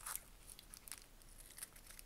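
Faint crinkling of clear plastic coin wrapping and tape being handled and snipped with scissors, with a few light, scattered clicks.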